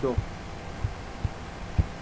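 Four dull, low knocks at irregular spacing over a faint steady hum, such as bumps on the desk picked up by the microphone.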